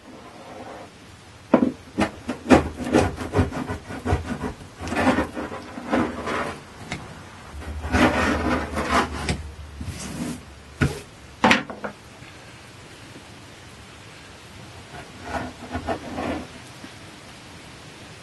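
Scraping and rubbing on mahogany planking as cured Sikaflex seam filler is raked and pulled out of the hull seams and the crumbs are brushed away. It comes as a run of irregular scrapes and sharp clicks over the first twelve seconds, then a little fainter rubbing near the end.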